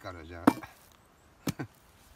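Sharp wooden knocks from concrete formwork stakes and boards being handled while the form is taken apart: one loud knock about half a second in, then two quick knocks about a second later.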